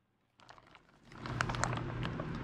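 Silence at first, then from about a second in a run of small clicks and crinkles: a plastic garbage bag and a paper instruction sheet being handled.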